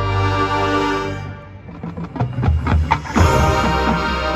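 Marching band playing live: a held brass chord dies away about a second in, then a run of sharp percussion hits builds back into the full band, loud again near the end.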